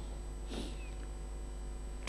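Pause in the speech filled by a steady low electrical hum, with one brief faint sound about half a second in.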